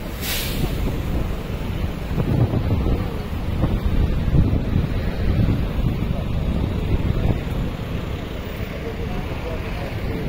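Street ambience in a busy city square: low, gusty wind rumble on the microphone over traffic and the voices of passers-by, with a short hiss just at the start.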